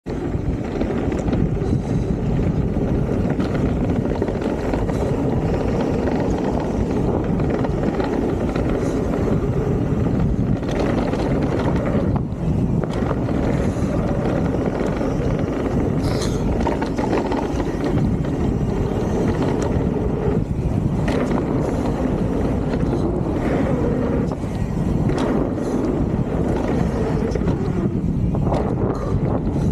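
Santa Cruz Megatower full-suspension mountain bike descending a gravel trail at speed: a steady rush of tyre noise and wind on the microphone, broken by short knocks and clatters as the bike hits bumps.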